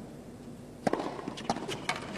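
Tennis serve: a racket strikes the ball sharply a little under a second in, followed by a few lighter knocks as the ball bounces and the point plays out, over low crowd ambience.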